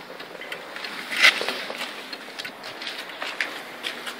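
Turn signal flasher of a 1995 Cadillac Fleetwood clicking faintly while the left blinker is on, with the flash rate changing: a fast rate is typical of a failed bulb filament. Handling and rustling noise is mixed in, loudest about a second in.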